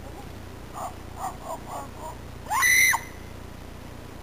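A person's voice: a few short vocal sounds, then one brief, loud, high-pitched squeal that rises, holds and drops, about two and a half seconds in.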